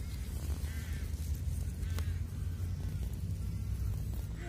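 A steady low rumble with a faint click or two.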